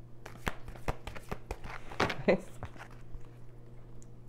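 A deck of tarot cards being shuffled by hand, the cards slapping together in a quick, irregular run of sharp ticks.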